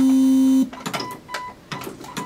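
Electronic beep tune from the robot game's speaker, a held low note that cuts off sharply about half a second in, closing the game's short melody. After it come a few sharp clicks and faint short high beeps as the motor-driven robot arms keep punching.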